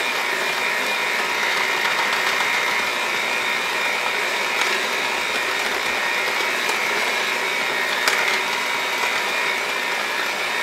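Cuisinart seven-speed electric hand mixer running steadily with a high whine, its beaters whisking cake batter in a glass bowl.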